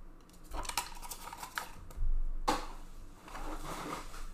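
A stack of trading cards being handled and flicked through by hand: quick clicks and rustles of card edges. About two seconds in there is a knock on the table, followed by a sharper, louder snap, then more rustling.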